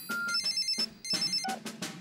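A cartoon mobile phone ringing with an electronic ringtone: a short beep, then a fast warbling trill twice, an incoming call that is then answered.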